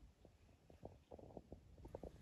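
Near silence: quiet room tone with a low rumble and a few faint, scattered clicks.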